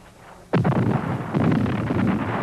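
Artillery shell explosion: a sudden blast about half a second in, followed by a continuing din of battle noise.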